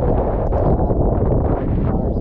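Strong wind buffeting the microphone in stormy weather: a loud, steady low rumble.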